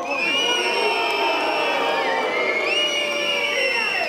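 A large crowd whistling and booing: many long, high whistles held and gliding over a mass of voices, a jeer at the speaker's naming of political opponents.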